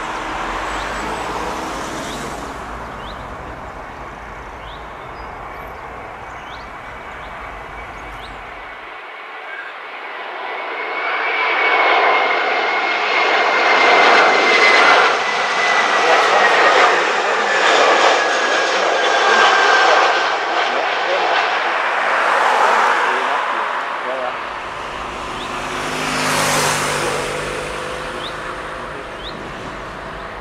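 Airbus A320-family twin-jet airliner on final approach with its landing gear down. The jet engines grow loud as it passes low, about ten seconds in, with a thin whine that falls slowly in pitch as it goes by, then fade after about twenty-four seconds.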